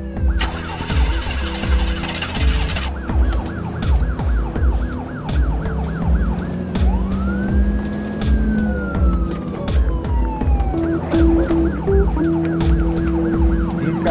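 Police car sirens sounding a fast yelp, with a slower wail that rises and falls about halfway through, over a dramatic music score with a steady pulsing bass beat.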